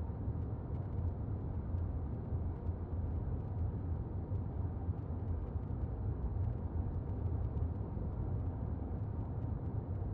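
Steady low rumble of a car's engine and tyres heard from inside the cabin while the car drives along.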